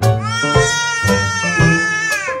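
A baby's long, drawn-out squeal that rises at the start, holds, and falls away at the end, over background piano music.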